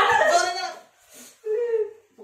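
Young men crying out in pain as a teacher swats them with a book. A loud wavering wail comes first, then a shorter, steadier held cry about a second and a half in.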